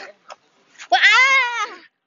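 A young girl's playful high-pitched squeal, about a second long, starting about a second in, its pitch rising and then dipping slightly.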